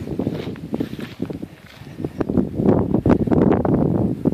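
Footsteps crunching and brushing through dry grass and sagebrush: an irregular run of rustles and crackles that grows louder about halfway through.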